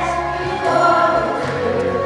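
Choral music: a choir singing held notes over accompaniment.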